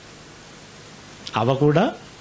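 A man's voice through a microphone, a short phrase about a second and a half in, after a pause filled only by steady hiss.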